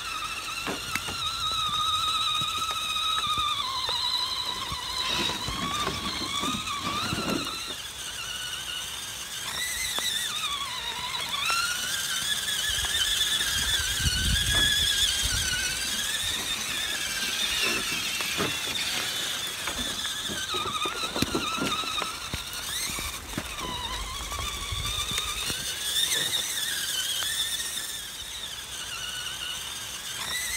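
Whine of RC crawler trucks' electric motors and geared drivetrains, rising and falling in pitch with the throttle as they drive through mud. A few low thumps come in along the way.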